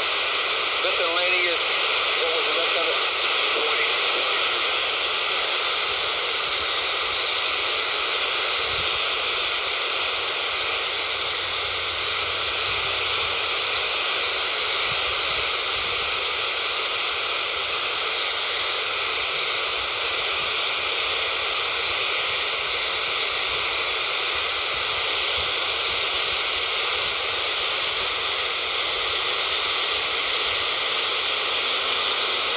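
Steady static hiss from a scanner's speaker, tuned to CB channel 35 (27.355 MHz AM) with no transmission on the channel. A faint wavering trace in the first second or two fades into the hiss.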